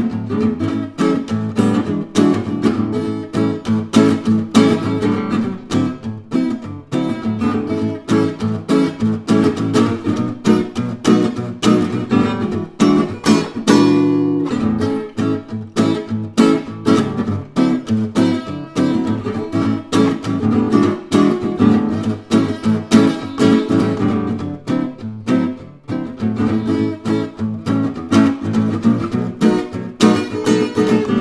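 Matthias Voigt Selmer-style gypsy jazz acoustic guitar, with a Sitka spruce top and jacaranda rosewood back and sides, played in quick picked runs and strummed chords, with one chord left ringing about fourteen seconds in. The guitar is well played-in, which gives it a really open sound.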